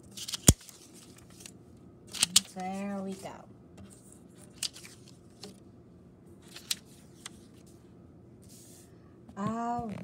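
Paper word cards being set down and slid on a wooden tabletop: scattered sharp taps and light rustles, the loudest about half a second in. A short hummed voice sound comes about three seconds in, and a spoken "all right" at the end.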